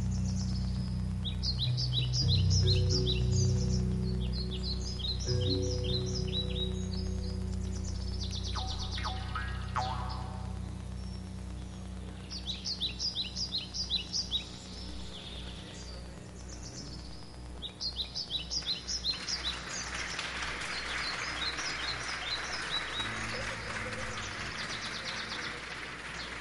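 The fading close of a live piece by an indigenous-inspired folk band: a low sustained drone with short, repeated runs of quick bird-like chirps high above it. From about twenty seconds in, a steady hiss-like noise rises under the chirps.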